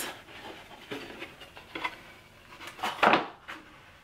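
Wooden wine case being handled and opened: a few light knocks and rubs of wood, then a louder wooden clunk with a scrape about three seconds in.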